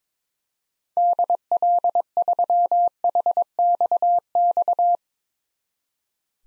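Morse code at 22 words per minute: a single steady beep tone keyed in dots and dashes, spelling the call sign DL3HXX in six letter groups. It starts about a second in and stops about a second before the end.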